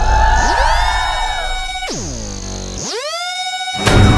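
Edited-in synthesizer music and sound effects with sliding pitch: a steep falling swoop about two seconds in, rising swoops after it, and a sharp hit just before the end. A low bass runs under the first half.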